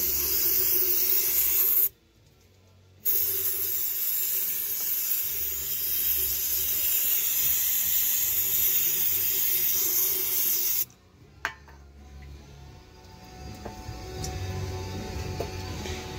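CRC quick-drying aerosol cleaner spraying into a hydraulic pump motor's housing to flush out oil that got in past a blown shaft seal. It sprays in two long bursts, the first about two seconds long, then after a one-second pause about eight seconds more, and it cuts off suddenly.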